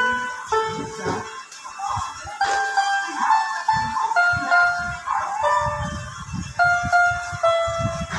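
A small harmonica played one note at a time: a halting tune of held notes about half a second each, stepping up and down in pitch, with breathy puffs between them.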